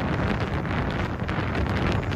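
Wind buffeting the microphone of a motorboat under way across open water: a steady rush of noise with gusty flutter.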